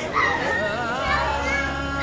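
A woman crying aloud in a high, wavering wail.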